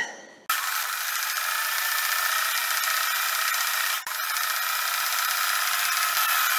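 Electric sewing machine running steadily as it stitches a side seam in knit fabric, starting about half a second in, with a brief break near four seconds.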